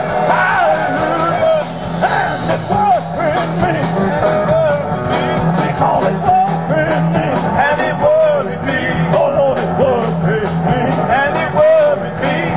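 A live blues-rock band playing, with wavering, bending high notes over a steady beat.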